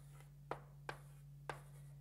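Writing sounds: a pen or marker tip making three short, faint ticks against the writing surface, about half a second, one second and a second and a half in, over a low steady hum.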